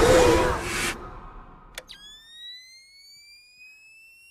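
Horror sound effects: a loud rushing noise burst cut off sharply about a second in, then a single click and a high, steady whine with overtones that slowly rises in pitch.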